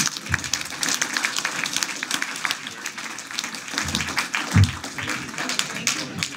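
Audience applauding: a dense patter of many hands clapping, with two dull low thumps about four seconds in.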